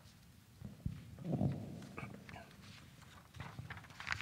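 A faint, distant voice speaking off-microphone, with a louder stretch about a second in and a few soft knocks.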